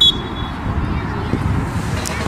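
Steady low wind rumble on the microphone at an outdoor football pitch, with faint distant voices. A brief high-pitched whistle-like tone sounds right at the start.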